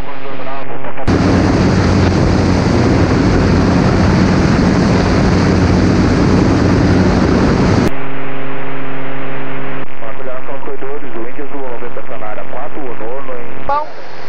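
Light aircraft engine and cabin noise heard through the headset intercom. A loud, even rush starts about a second in as a headset microphone's voice gate opens, and it cuts off suddenly near the eighth second. After that only a steady low engine hum remains.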